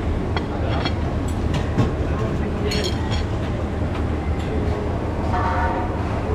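Busy market-bar ambience: a steady low hum under background voices, with scattered clinks of plates and cutlery.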